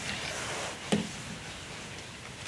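A single sharp knock about a second in, over faint room noise.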